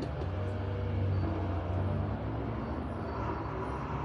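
Steady low background rumble, with no distinct clicks or knocks standing out.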